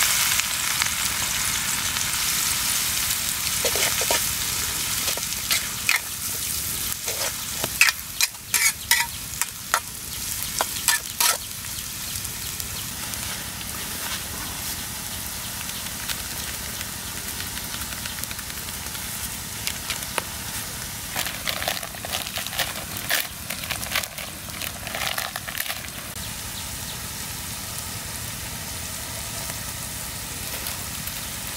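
Sliced lemongrass and chilies sizzling in hot oil in a steel wok, loudest at first as the ingredients go in, then settling to a steady fry. A utensil clicks and scrapes against the wok in two spells of stirring.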